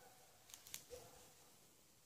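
Near silence: faint outdoor background with a short, faint tonal call about a second in and a few soft ticks.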